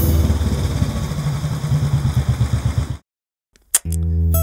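A vehicle engine running with a low, uneven throb, cut off abruptly about three seconds in. A single sharp click follows in the silence.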